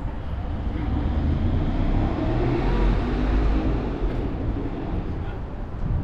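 Street traffic: a car passing, its engine and tyre noise swelling to a peak around three seconds in and then fading, over a steady low rumble.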